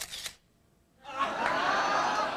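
A single camera shutter click at the start, then a studio audience laughing from about a second in.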